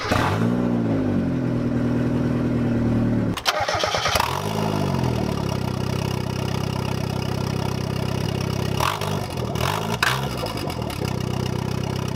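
Turbocharged Mazda Miata four-cylinder engine starting for the first time after its turbocharger install: it catches and revs up, settles to a steady idle with a break and a second rise in revs about three and a half seconds in, then takes two short throttle blips near the end and idles again.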